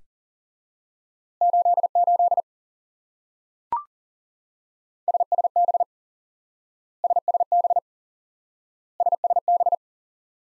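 Morse code sent at 40 wpm as a steady beeping tone: "88" once, then a short higher courtesy beep, then "SSB" three times in quick bursts about two seconds apart.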